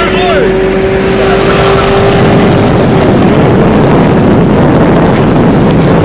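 Cars accelerating hard side by side on a highway in a roll race, heard from inside one car: a steady engine drone gives way, about two to three seconds in, to a loud rush of engine and wind noise through the open window.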